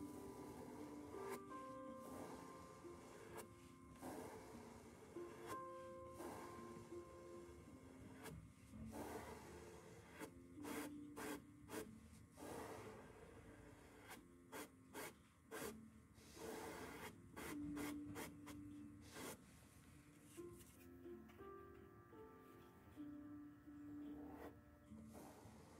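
Faint, repeated scratchy rubbing of a small flat paintbrush stroked over fabric as paint is brushed in, with soft background music underneath.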